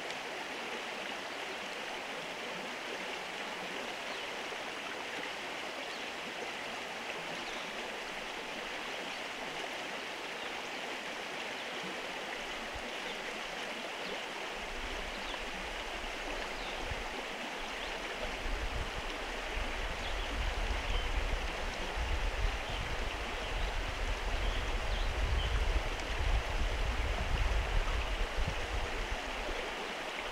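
Steady rushing noise like a nearby creek running. From about halfway, a deep low rumble joins it and the sound grows louder and more uneven.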